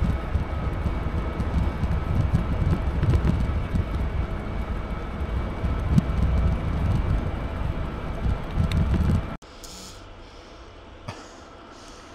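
Rumbling wind and road noise from riding an e-bike at speed, with a faint steady whine over it. The noise cuts off abruptly about nine seconds in, leaving a quieter steady hum.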